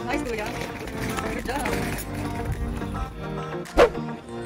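Background music with steady chords, over which an untranscribed voice is heard in the first half. Near the end a single brief, loud burst cuts through just before the music resumes.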